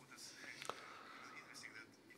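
Near silence in a pause between spoken phrases: faint room hiss, with one small click a little past half a second in.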